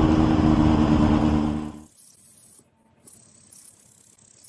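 Motorcycle engine running at a steady speed with wind noise, fading out about two seconds in, leaving only faint scattered sounds.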